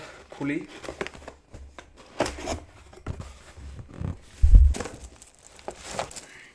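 Cardboard keyboard box being opened and handled, with crinkling of the plastic bag around the keyboard and scattered rustles and clicks; a dull, deep thump about four and a half seconds in is the loudest sound.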